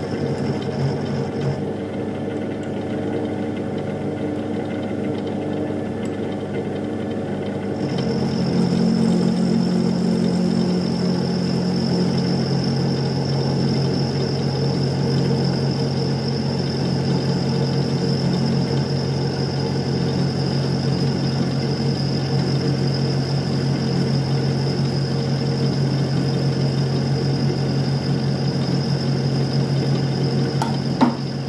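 Milling machine running, a small end mill cutting an aluminium block held in a machine vise: a steady mechanical hum with a thin high whine. About eight seconds in the sound shifts and grows a little louder.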